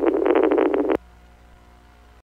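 Police two-way radio hiss with crackles at the tail of a transmission, cutting off suddenly with a click about a second in as the transmission ends. A faint steady hum follows.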